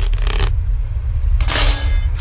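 A steady low drone with a brief hissing burst about one and a half seconds in, the background score and sound effects of a spoken horror dialogue sample.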